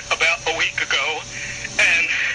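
A person talking, the voice thin and narrow as if heard over a radio.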